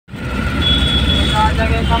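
Steady low rumble of a car's engine and tyres heard from inside the cabin while driving, with a voice starting near the end.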